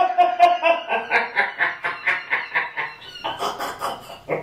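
A person laughing in a long run of short, rapid pulses, about four or five a second, with a brief break near the end before the laughter picks up again.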